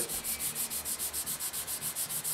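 320-grit sandpaper rubbed by hand over a putty-filled seam on a plastic model hull, dry, in quick back-and-forth strokes of about five a second.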